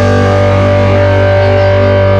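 Distorted electric guitars from a live metal band, ringing out on a held chord with no drums under it.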